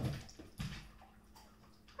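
A dog scrambling after a tossed treat on a hardwood floor: a couple of dull knocks and light ticks of paws and claws on the wood.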